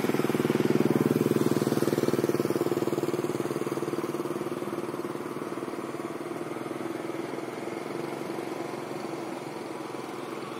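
A small engine running with a fast, even beat, loudest about a second in and then slowly fading away.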